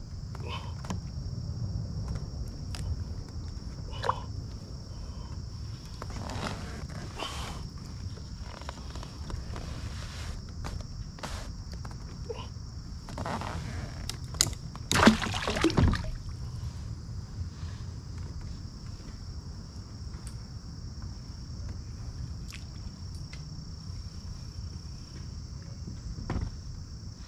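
Steady high-pitched insect chorus, with scattered knocks, clunks and water sloshing from handling in a kayak. The loudest is a burst of splashing and knocking about fifteen seconds in.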